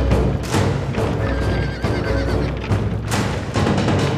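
Dramatic film score with heavy drums, mixed with the hoofbeats of horses pulling advancing war chariots and horses whinnying.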